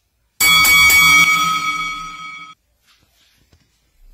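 A boxing-ring bell struck once, its ring fading out over about two seconds. It marks a change of round in the fight.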